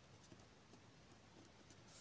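Very faint scratching of a pen writing on paper.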